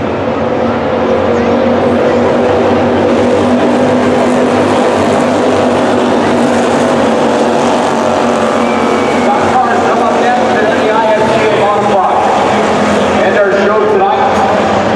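Slingshot race car engines running at racing speed on a dirt oval, a steady sound whose pitch shifts up and down as the cars go through the turns.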